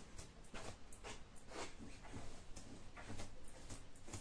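A comb drawn again and again through a long clip-in hair extension, giving faint, quick brushing strokes about two or three a second as it works through hair that tangles badly.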